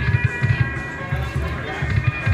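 Ainsworth Ming Warrior slot machine playing its free-games music during a free spin: a pulsing low beat under a few held high tones.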